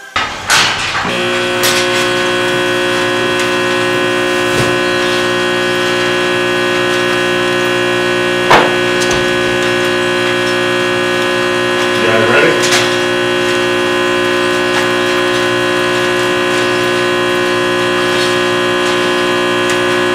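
A loud, steady drone of many held tones, unchanging like a sustained synthesizer chord, starting about a second in. A single sharp knock cuts through it near the middle, and a brief rougher sound comes about two-thirds of the way through.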